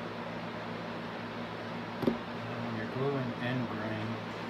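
Steady low electrical hum and hiss of the workshop, with a single sharp knock about two seconds in, then a man's brief murmured voice near the end.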